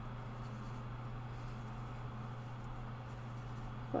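Quiet room tone: a steady low hum with a few faint, soft scratching sounds.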